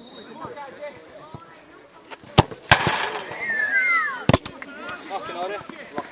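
Three sharp knocks, at about two and a half, nearly three and four and a half seconds in. The second is followed by a hiss lasting about a second and a half, over which two whistle-like tones fall in pitch. Faint talk runs underneath.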